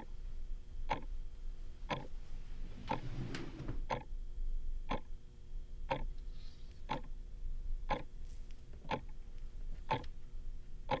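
A clock ticking steadily, about once a second, with a soft rustle about three seconds in.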